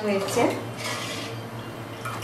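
A steel ladle stirring milk in a steel pot, scraping and clinking against the metal.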